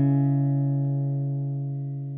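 Last strummed acoustic guitar chord ringing out and fading steadily as the song ends.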